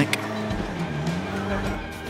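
GT race car engine heard under background music, its note dropping in pitch about halfway through and climbing back.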